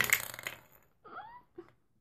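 MAC lipstick cap pulled off the tube: a short rasping slide right at the start, followed about a second in by a faint, short squeak.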